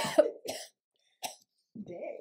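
A woman coughing: a cluster of short coughs in the first second, the loudest among them, then one more a little after a second in.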